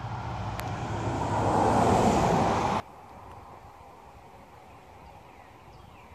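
A passing vehicle: a rush of noise with a low hum that swells for about two seconds and then cuts off suddenly, leaving faint outdoor background.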